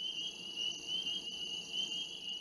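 A steady high-pitched trill of insects, several held tones wavering slightly together.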